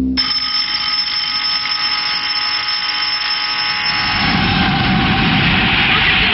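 A ringing, alarm-like sound: several steady high tones with a fast flutter on top start suddenly. About four seconds in, a dense wash of noise builds up beneath them.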